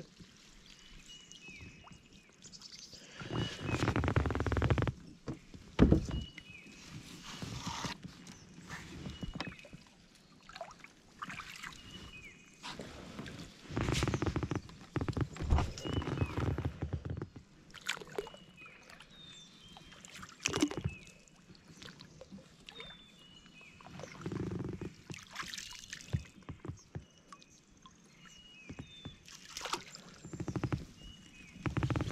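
Water splashing and sloshing in irregular bursts beside a kayak as a hooked pike is worked alongside and scooped up in a landing net, with quieter stretches between the bursts.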